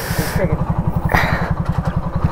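Motorcycle engine idling with a steady, even beat of about fourteen low pulses a second, with short bursts of hiss at the start and about a second in.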